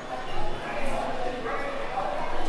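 Background voices of people talking in an indoor shopping arcade, several overlapping and indistinct.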